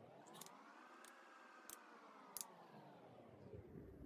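Near silence: faint room tone with a distant pitched hum that rises and then slowly falls over a few seconds, and a few faint clicks.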